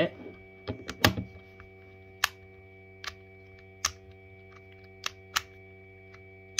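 Sharp clicks of a physical 2^4 puzzle's magnetic plastic pieces snapping apart and together as it is turned, about eight clicks at irregular spacing, three of them close together in the first second or so.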